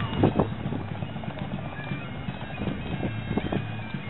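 Bagpipe music playing in the distance, its steady drones held under the noise of an open field, with a few faint knocks.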